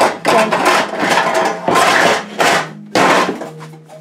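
Metal bakeware clanking and rattling as pans are rummaged through and pulled from a kitchen cabinet, in several loud bursts.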